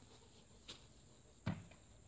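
Quiet outdoor background with two brief soft knocks, the second and louder one about a second and a half in.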